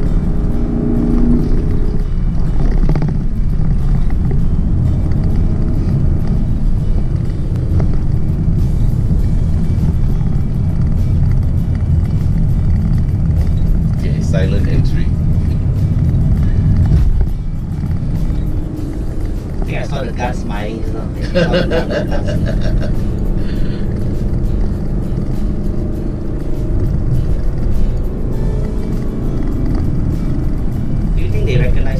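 Lexus LC 500's 5.0-litre V8 running hard under load up a hill climb, heard from inside the cabin with road noise, a deep steady rumble. The engine note drops off sharply a little past halfway as the throttle is eased.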